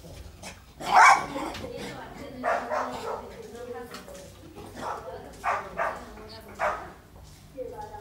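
A small dog barking excitedly in short, loud barks a second or two apart, the loudest about a second in.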